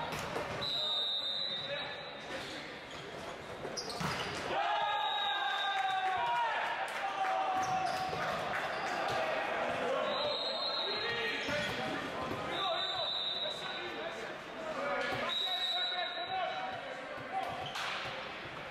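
Indoor volleyball play in a large, echoing gym: a volleyball struck with sharp hits, players' voices calling out during the rally, and short high squeaky tones.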